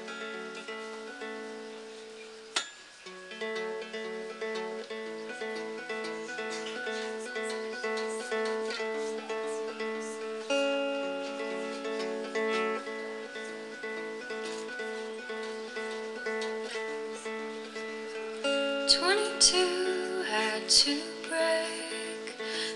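Solo acoustic guitar playing a song's intro, a steady pattern of plucked notes that ring into each other. A single sharp click comes about two and a half seconds in, and the playing grows louder and busier in the last few seconds.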